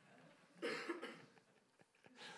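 A single short cough, a little after half a second in, in a quiet room.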